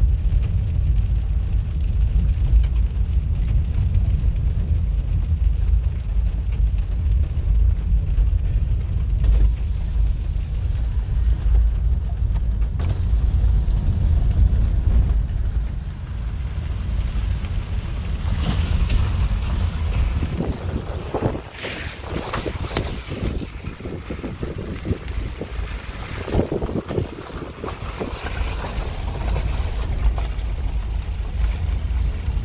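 Car driving slowly on a wet dirt road, heard from inside the cabin: a steady low rumble of tyres on the road. About halfway through the rumble eases and a rougher hiss of outside air with scattered crackles comes in.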